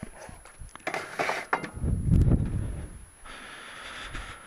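Handling noise of a hand-held camera being moved around a workbench: a few clicks and rustling scrapes, then a heavy rubbing rumble on the microphone about two seconds in, and a steady hiss near the end.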